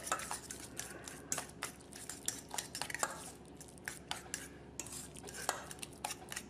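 Metal fork stirring a mashed avocado mixture in a stainless steel bowl, with quick irregular clinks and scrapes of the fork against the bowl.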